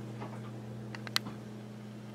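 A steady low hum, with a few light ticks about a second in.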